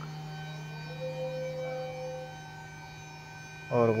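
A steady low hum with several faint, unchanging higher tones above it. A faint extra tone comes in about a second in and fades out a little past the middle.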